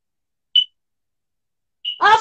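Silence broken by a short high-pitched beep about half a second in, with a second brief high blip near the end.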